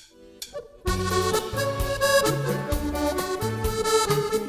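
Maugein button accordion playing a tune. After a few soft notes, the full music comes in about a second in, with melody and chords over a steady rhythmic bass.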